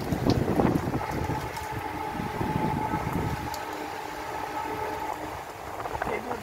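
Stormy wind and heavy rain, with the wind buffeting the microphone through the first half and easing after about three and a half seconds. A steady high tone runs through the middle few seconds.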